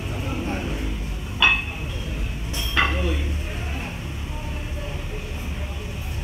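Two sharp metallic clinks of gym weights, about a second apart, the first the louder, over a steady low rumble of the gym.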